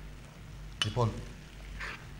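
Low, steady studio room tone, with a single sharp click a little under a second in and a short grunt-like vocal sound from a man right after it.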